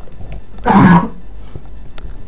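A man coughing once, a short loud cough about two thirds of a second in.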